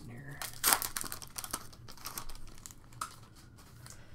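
Foil trading-card pack wrapper crinkling in the hands as it is torn open and the cards are pulled out, in several short rustling bursts that die down near the end.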